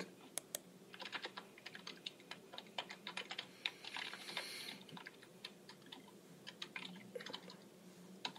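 Faint typing on a computer keyboard: irregular key clicks, several a second.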